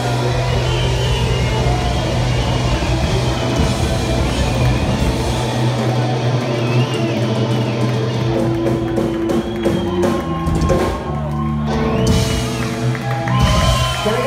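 Rock band playing live: electric guitar, bass and drum kit, with held low bass notes under the dense mix.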